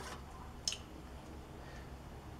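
Basting brush spreading barbecue sauce over ribs in an aluminium-foil tray, quietly, with two short clicks: one at the start and a sharper one just under a second in. A steady low hum runs underneath.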